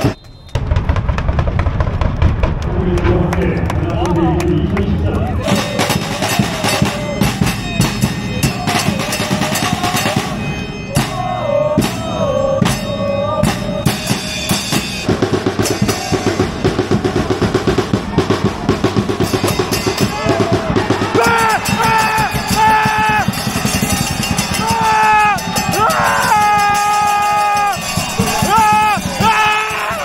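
Football supporters' drums, a bass drum and snare with cymbal, beating a fast, steady rhythm while a group of fans chant along. The chanting grows louder and clearer in the second half.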